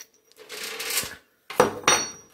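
Steel saw chain rattling as it is slipped off a chainsaw clutch drum sprocket, then the metal clutch drum set down on the workbench with two sharp clinks and a brief metallic ring.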